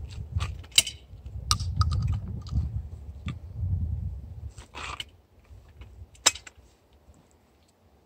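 Metallic clicks and rattles of a break-action shotgun being handled and loaded, a few separate clicks over a low rumble, with a sharp click about six seconds in as the action is snapped shut.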